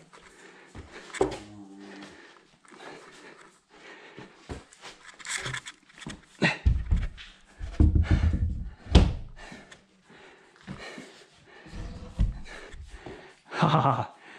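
Irregular knocks and heavy low thumps of a cedar mantel log being handled and set in place on a dry-stacked stone fireplace wall, the loudest thumps a little past the middle.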